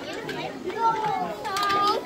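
Young children's voices and chatter as they play, with one child's high voice held for about half a second near the end.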